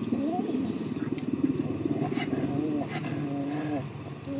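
A dog grumbling: a low, rough growl-like rumble with whining tones that rise and fall, in a few drawn-out phrases.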